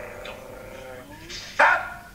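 A drawn-out, held vocal sound from a person's voice, heard through the laptop's speaker. About one and a half seconds in it is followed by a short, loud exclamation.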